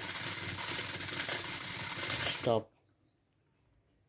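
Robot car's two DC gear motors running the wheels with a steady whirr and a fast, fine clatter, then cutting off abruptly a little under three seconds in as the wheels stop on a changed hand-gesture command.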